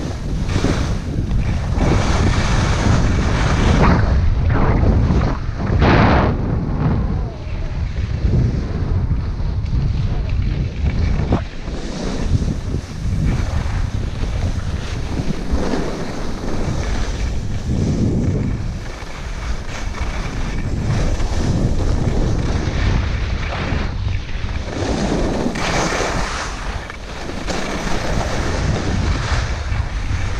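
Wind buffeting the microphone of a camera carried by a downhill skier. Several swells of hiss from skis scraping over packed snow rise and fall in it.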